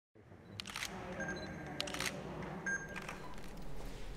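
Faint room noise with a few scattered short clicks and knocks, the brightest about half a second, two seconds and near three seconds in.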